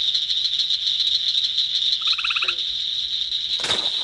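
Night insect chorus: a steady, high-pitched pulsing drone of crickets or katydids, with a brief pulsed call about two seconds in and a short, sharp rustle of grass near the end.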